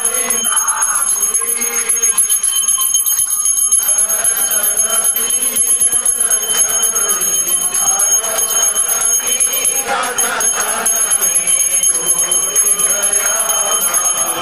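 Temple bells ringing rapidly and without pause during a Hindu aarti: a dense run of quick metallic strikes over a steady high ring.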